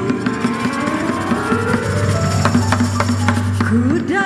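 Live band playing an instrumental break between sung lines: drums and percussion strike busily over electric guitar and keyboard, with a slowly rising melodic run. A female voice glides back in right at the end.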